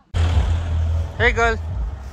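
Wind buffeting the microphone outdoors: a heavy, loud rumble with hiss that starts suddenly. A person gives a short high-pitched call about a second in.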